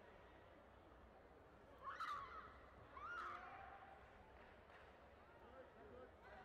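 Faint, steady hall murmur broken by two short, high-pitched shouts about a second apart, around two seconds in.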